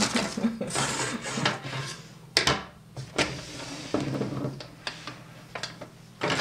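Hands handling fabric and a paper pattern on a wooden tabletop: rustling at first, then a few scattered sharp clicks and knocks of small objects set down on the table, the loudest about two and a half seconds in.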